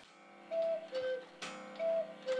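Carved wooden cuckoo clock calling twice. Each call is a higher note dropping to a lower one, and the calls come a little over a second apart.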